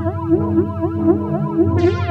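Electronic synthesizer improvisation on a Roland Juno-106 and a Casio CZ-101: a repeating figure of short notes that each bend down and back up, about three a second, over a pulsing bass. A bright sweep falls from high to low near the end.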